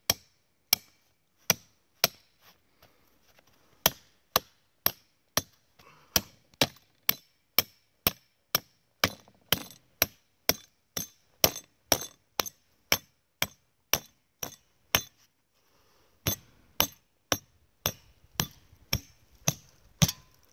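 Hammer blows on the head of a 36-inch steel trap stake, driving it into the ground to anchor a foothold trap. Sharp strikes come steadily about two a second, with a pause of about a second about three quarters of the way through.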